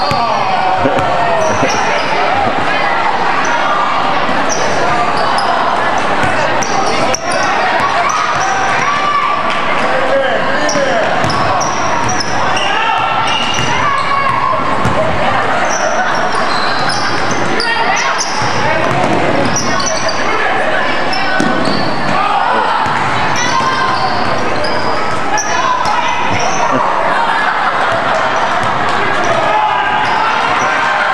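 A basketball being dribbled on a hardwood gym floor, with sneakers squeaking, under steady crowd chatter in a large gymnasium.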